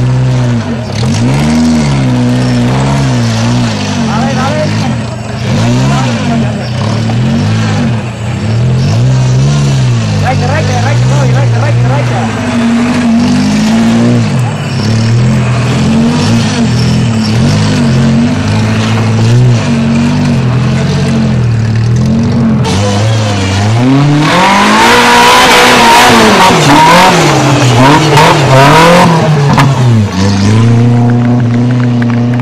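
Off-road trial buggy's engine revving up and down again and again under load, then a louder, harder full-throttle run over the last several seconds.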